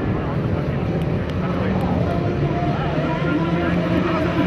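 Engines of several off-road trucks running hard as they race over dirt, a steady drone, with people's voices over it.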